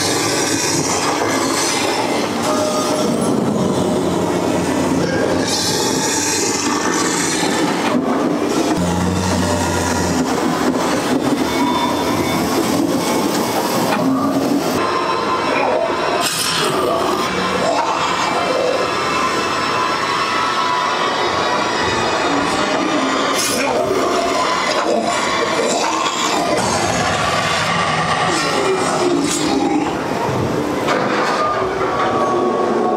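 Loud, continuous haunted-house soundscape: a piped-in ambient soundtrack with rumbling, clattering sound effects and a few sharp bangs.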